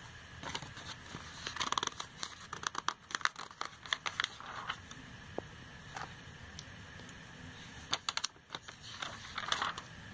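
Glossy catalogue pages being turned by hand: paper rustling and swishing with small sharp clicks, in one busy stretch in the first half and again near the end.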